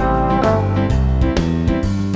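Instrumental jazz tune with piano and synthesizer backing over a steady bass line and beat, and a trombone playing.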